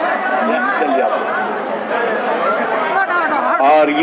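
Dense crowd of many people talking at once, a steady babble of voices, with one man's voice rising louder near the end.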